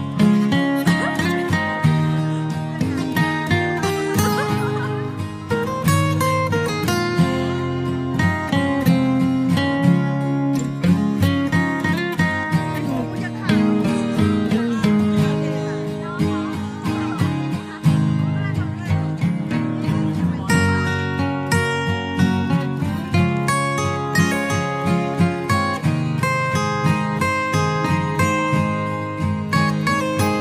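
Background music led by acoustic guitar, with a steady run of plucked and strummed notes.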